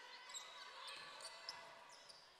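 Faint game sound from a basketball court, with two brief high squeaks: one about a third of a second in, one about a second and a half in.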